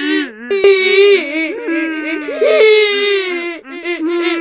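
Layered crying wails of the banana cat meme sound: long, drawn-out sobbing cries at several pitches overlapping, breaking off briefly about half a second in and then going on.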